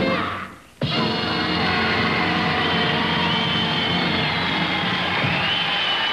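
A jump-blues band's last chord dies away. About a second in, steady, sustained band music cuts in suddenly, with many held notes and a wavering high line, and carries on.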